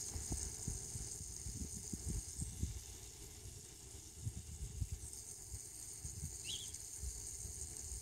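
Quiet outdoor ambience: a faint steady high-pitched insect chirring that thins out for a few seconds in the middle, over soft irregular low rumbles, with one short high chirp about six and a half seconds in.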